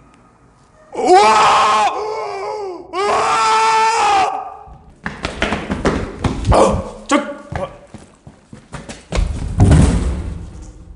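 A loud, high, wavering cry about a second in, a fainter wavering one after it, and another loud cry about three seconds in. Then a run of knocks, rustles and heavy thumps of close movement.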